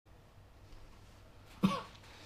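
A single short cough about a second and a half in, over a faint low room hum.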